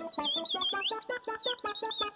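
A cartoon chick's high, warbling cheeps and quick chirps, its way of talking, over light background music with a fast, even plucked beat.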